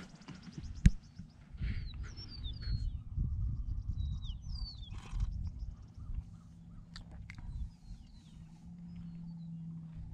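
Wild marsh birds giving a few short, descending chirps over a low rumble, with one sharp click about a second in. A low steady hum comes in near the end.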